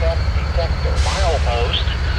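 Diesel locomotives running with a steady low rumble. About a second in, a radio voice begins: the start of an automated wayside defect detector announcement heard over a scanner.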